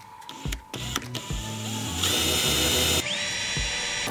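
Cordless drill boring a hole through a wooden countertop. It is fairly quiet at first and loud from about two seconds in, with a high whine that dips and climbs back just after the three-second mark.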